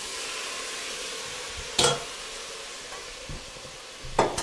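Rinsed fish carcasses (bones, fins and flesh) sizzling steadily in hot olive oil in a stainless steel pot as they begin to sweat for a fish stock. There is a single sharp knock just before two seconds in.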